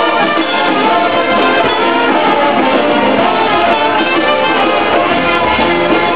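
Live band music led by brass, with a trumpet, playing steadily.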